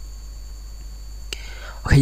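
A quiet pause with a steady low hum and a single short click about a second in, then a man's voice begins near the end.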